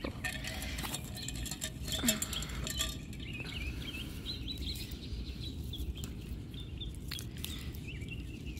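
Small birds chirping faintly in the background, a string of short twittering calls through the middle of the stretch. Close by, leaves rustle and small clicks come as basil stems are handled and pinched, over a low steady rumble.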